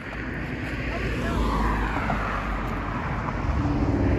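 A car passing by on the street: a steady rumble and rush of tyre noise that swells slightly and then eases.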